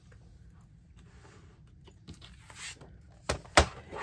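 A plastic 12-inch paper trimmer being set down on a craft cutting mat with the paper page: soft sliding and rustling of paper, then two sharp knocks about a third of a second apart near the end.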